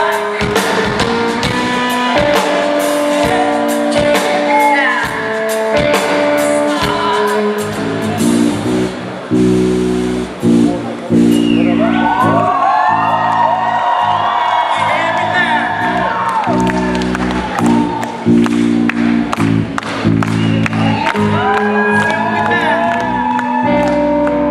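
A live band playing in a hall, heard from the audience: a steady drum beat under held bass chords and electric guitar. A singer comes in around the middle and again near the end.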